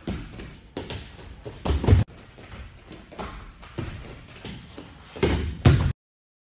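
Wrestlers' bodies and feet thudding and scuffing on a padded wrestling mat as a partner is stepped around and taken over in a throw: a series of thuds, the loudest about two seconds in and two more close together near the end.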